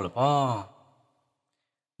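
A man's voice narrating in Hmong, ending a phrase on a drawn-out syllable that fades away by about a second in, then stops.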